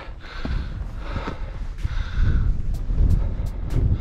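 Wind gusting over the microphone, a loud, uneven low rumble, with a hiker's heavy breathing twice as he climbs. A few light clicks come in the last second.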